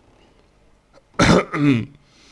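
A man clearing his throat with a cough: two loud bursts a little over a second in, the second carrying a voiced sound that falls in pitch.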